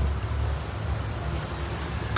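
Steady low rumble of background traffic in a gap between sentences.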